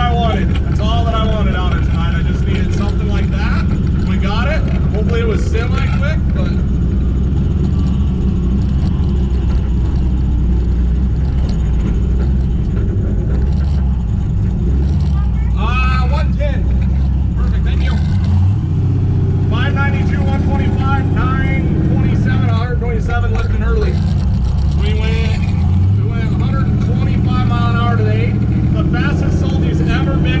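Twin-turbo LS V8 of a drag-prepped Camaro running at low speed, heard from inside the caged cabin as a steady low drone. Its note changes about two-thirds of the way through.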